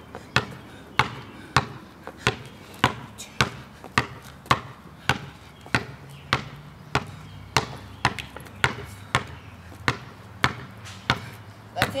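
A basketball dribbled on a concrete driveway: steady, even bounces, about three every two seconds.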